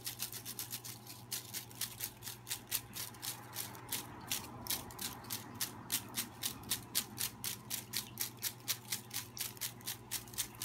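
Folded paper slips rustling and rattling inside a plastic mesh basket that is being shaken back and forth in a quick, even rhythm.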